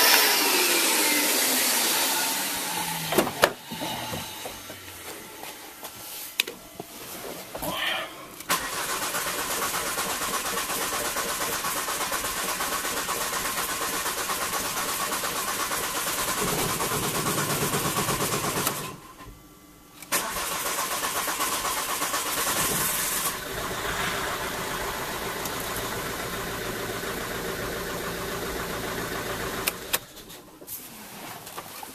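A vacuum cleaner motor winds down with a falling whine at the start. About eight seconds in, the Volvo V50's 2.0 four-cylinder turbodiesel starts and runs steadily, freshly restarted after a fuel filter change with air still being purged from the fuel lines; the sound drops out briefly about two-thirds of the way through, then the engine is running again.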